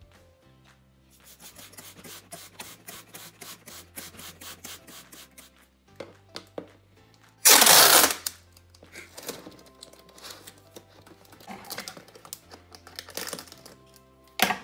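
Clear packing tape pulled off its roll in one loud, short rip about halfway through, taping the cut plastic soda bottle shut; quick clicks and crinkles of the plastic bottle and tape being handled before and after, over background music with a steady bass line.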